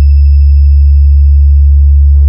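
A very loud, deep electronic bass tone held steady: the sustained sine-wave sub-bass of a DJ 'vibration' sound-check track, made to shake the speakers. A faint thin high tone sits above it, and near the end two soft hiss-like hits come in, the second louder.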